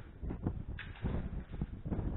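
Wind gusting against the camera's microphone, an uneven low buffeting with a short rush of hiss just under a second in.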